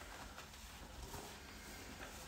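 Almost silent room tone with a couple of faint soft clicks.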